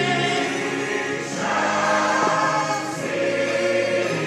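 Church choir of men and women singing, holding sustained chords and moving into a new phrase about a second in.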